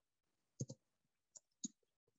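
Faint computer-keyboard keystrokes: about four separate key clicks while a search word is typed.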